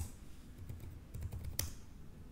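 Typing on a computer keyboard: one sharp click at the start, then a quick run of keystrokes a little over a second in, the last one the loudest.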